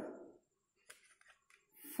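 Two faint, brief clicks of wax crayons being handled and set down one at a time on a wooden tabletop, with little else to hear.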